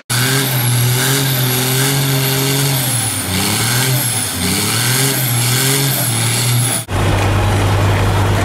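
Semi-truck diesel engine revving hard during a burnout, its pitch rising and falling several times, with a thin high whine above it. It cuts off abruptly near the end, giving way to a steady low drone.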